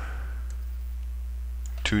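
Steady low electrical hum with two faint computer mouse clicks, about half a second in and near the end, as the level list is scrolled; a man's voice starts just at the end.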